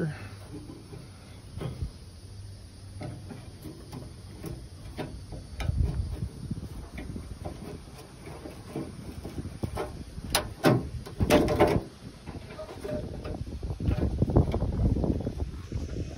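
A pry tool scraping along a 1972 Chevy C10's door window channel, working rusty metal retaining clips and hardened old weatherstrip loose. Scattered scrapes and clicks, with a quick run of sharper clicks and snaps a little after ten seconds in.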